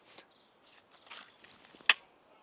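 A pistol drawn slowly from its holster with faint rustling of gear and hands, then a single sharp click near the end as the trigger is pressed on the empty pistol: a dry-fire shot.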